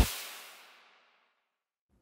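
The reverberant tail of a logo-sting sound effect fading out within about a second.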